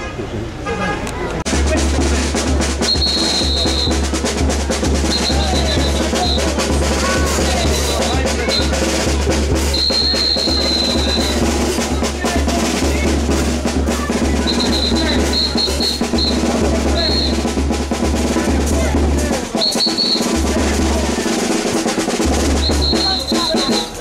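Drums playing a sustained roll, snare and bass drum together, with a high steady tone sounding in short blasts every few seconds. The drumming breaks off briefly near the end and then starts again.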